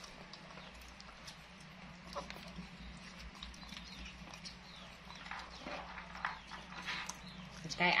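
Faint small clicks and crackles of two macaques peeling and chewing longan fruit, over a steady low hum. A woman's voice comes in at the very end.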